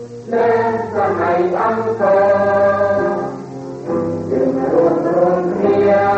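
A choir singing, with notes held about a second each over a steady low tone.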